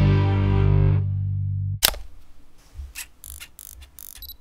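Outro music: a held guitar chord rings and fades, broken off a little under two seconds in by a single sharp hit. A run of short, faint clicks follows.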